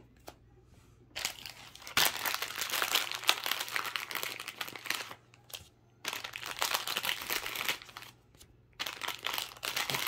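Trading-card pack wrappers being crumpled and crinkled in three spells, starting about a second in, with short pauses near the middle and near the end.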